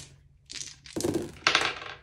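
Six small dice shaken and rolled out onto a binder page, clattering in three quick bursts as they tumble and settle.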